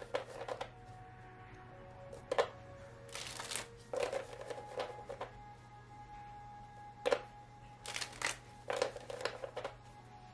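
A deck of tarot cards shuffled by hand, in repeated short bursts of rustling and clicking as the cards slide against each other. Soft background music with held notes plays underneath.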